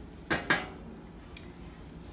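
Two sharp metallic clinks close together, then a faint tick: a small steel surgical instrument set down against a metal instrument tray.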